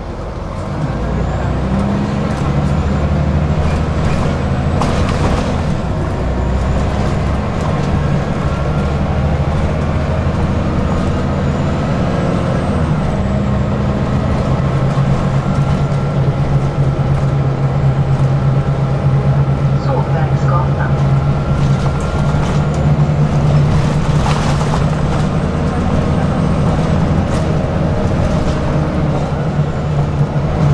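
Cabin sound of a city bus under way: the engine and drivetrain drone as a steady run of low tones that shift in pitch, over road rumble, with faint thin higher tones. It grows louder about a second in.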